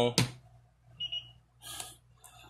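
A sharp click just after the start, then a short high-pitched beep about a second in, followed by a brief rustle of handling near the end.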